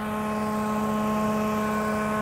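Steady drone of the truck-mounted pressure-washing and water-reclaim vacuum machines running, holding one pitch.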